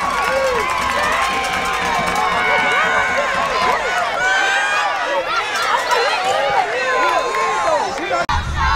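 Crowd of spectators and players cheering and shouting, many voices overlapping.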